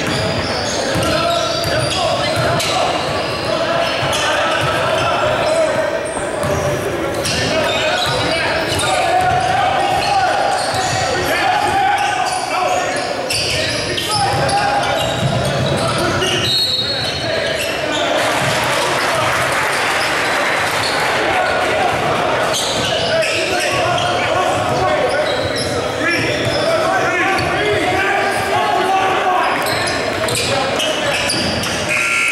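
Basketball game in a large gymnasium: the ball bouncing on the hardwood court amid a constant mix of player and spectator voices, all echoing in the hall. A short, high whistle blast sounds a little past halfway through.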